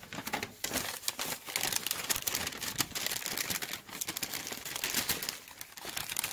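Paper sandwich wrapper being unfolded and crinkled by hand as a sub is unwrapped: a steady, irregular rustling and crackling of paper.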